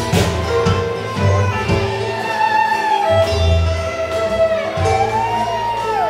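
A live bluegrass-style string band plays an instrumental passage: fiddle with sliding notes over strummed acoustic guitar, banjo and upright bass.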